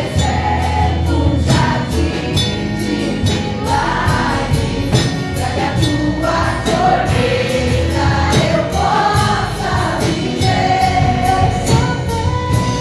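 Women's choir singing a gospel worship song through microphones over amplified accompaniment with bass and a steady beat.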